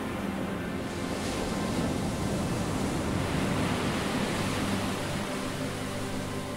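Ocean surf: a steady rush of breaking waves, swelling a little in the middle. Faint background music sits underneath near the start and near the end.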